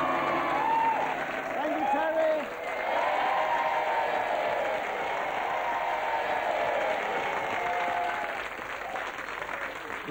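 Studio audience applauding, with voices shouting and cheering over it in the first couple of seconds; the applause eases off near the end.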